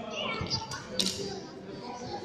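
Background chatter of children's and adults' voices, with a sharp click about a second in from a badminton racket striking the shuttlecock.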